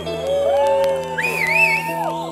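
Live band music played by keyboard and electric guitar: long held notes sliding slowly between pitches over a steady low tone, with a high wavering line over it in the second half.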